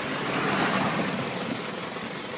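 Motor-vehicle noise: a rushing sound with no clear pitch that swells from about half a second in and then eases.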